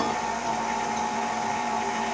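Electric stand mixer with a whisk attachment running steadily, its motor giving a constant hum as it mixes cake batter.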